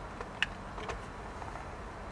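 A few faint, short clicks of buttons on a small handheld infrared remote being pressed, the clearest about half a second in, over a low steady hum.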